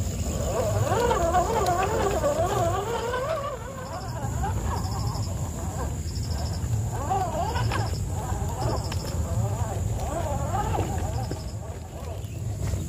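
Electric motor and gear drivetrain of an RGT EX86100 RC crawler whining, its pitch wavering up and down as the throttle and the load change while it climbs over rocks. The whine eases about four seconds in, then returns in shorter spurts.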